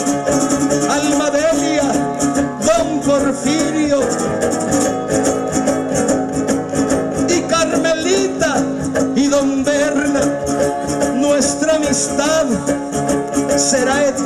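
Son arribeño (huapango arribeño) ensemble playing an instrumental passage: violins carrying a sliding melody over strummed guitars keeping a steady rhythm.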